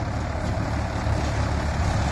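Mahindra diesel tractors, an XP Plus and a Yuvo, running steadily as they pull balers working together, a continuous low engine drone.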